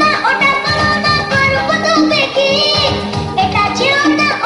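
A song playing for the dance: a voice singing over instrumental accompaniment with a regular beat.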